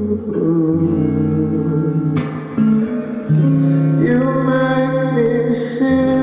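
Live band playing a song: a male singer's held, sustained vocal notes over guitar, bass, keyboard and drums.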